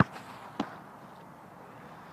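A soccer ball struck sharply, then a softer thud about half a second later as the goalkeeper drops to his knees and gathers it.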